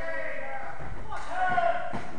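Men's voices talking close by, words unclear, with a thud near the end.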